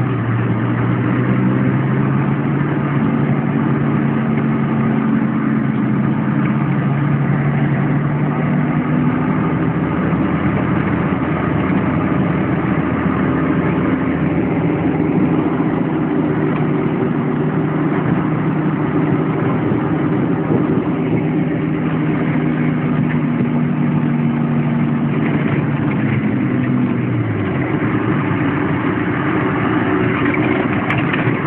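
Mercedes-Benz G-Class Wolf off-roader's engine running steadily under way, heard from inside the cab. Near the end the engine's pitch falls as the revs drop.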